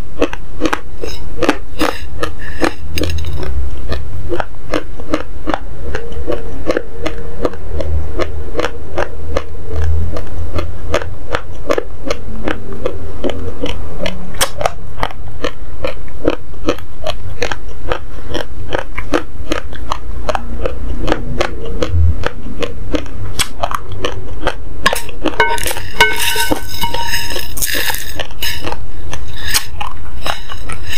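Raw basmati rice grains crunched and chewed close to the microphone, in a steady, rapid run of sharp crunches. Near the end, a wooden spoon scrapes and clinks on a ceramic plate as more raw rice is scooped up.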